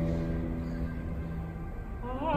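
Guitar accompaniment: a chord rings on and slowly fades in the church's reverberation, in a pause between sung phrases of the song.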